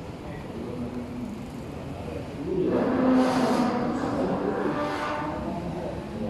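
A man's voice chanting a long, drawn-out prayer phrase. It starts about two and a half seconds in and lasts about three seconds.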